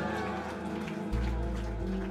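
Live band playing sustained electric guitar chords, with a deep bass note coming in about a second in.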